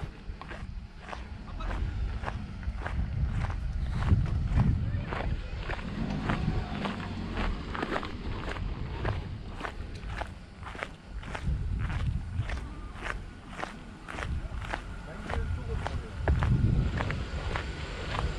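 Footsteps on a dirt road, about two steps a second.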